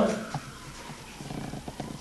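The end of a man's word right at the start, then a quiet room with a few faint clicks and taps from a marker pen on flip-chart paper, most of them near the end.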